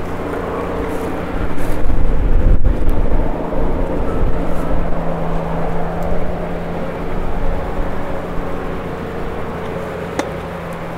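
A motor's steady hum over a strong low rumble, swelling louder about two seconds in and settling back down.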